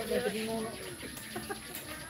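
A chicken clucking, mixed with a person's voice.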